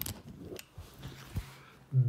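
Faint handling noise: a few light clicks and some rubbing as the phone and a small wooden letter tile are moved about, with a sharper click at the start.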